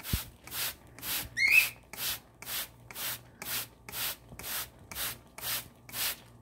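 Spray bottle misting water in quick pumps, about two sprays a second in a steady rhythm. A cockatiel gives one short rising chirp about a second and a half in.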